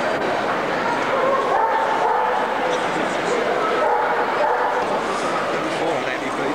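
Dogs whining and yipping, with a couple of drawn-out whines, over steady crowd chatter.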